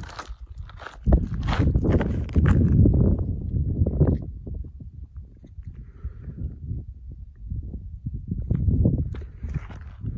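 Footsteps crunching on loose desert gravel, with knocks and rubbing from the handheld camera being carried. The sound comes in uneven spells, louder in the first few seconds and again near the end.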